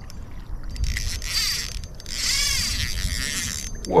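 Spinning reel and line whirring as a freshly hooked fish is fought from a kayak: a hissing whir that swells about a second in and again around two seconds, over low water and hull noise.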